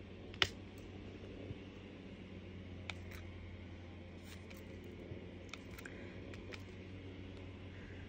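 Faint, scattered clicks and taps of a diamond-painting drill pen picking up square resin drills from a plastic tray and setting them onto the canvas; the sharpest click comes about half a second in.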